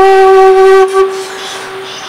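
Bamboo bansuri flute holding one long steady note, which breaks off about a second in with a brief swell and then dies away into a quieter pause.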